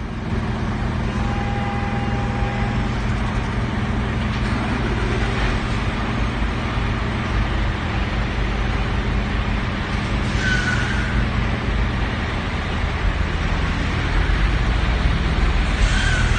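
Diesel engine of a Mercedes-Benz truck running at low revs as it pulls slowly forward with a refrigerated trailer, getting louder near the end. Short high squeaks come about ten seconds in and again at the end.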